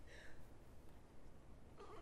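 Mostly near silence, broken early by one faint, short, high-pitched sob from a tearful woman at a handheld microphone, and a faint breath near the end.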